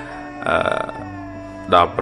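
A man's short throaty vocal sound about half a second in, then a spoken syllable near the end, over a soft background music bed of steady held notes.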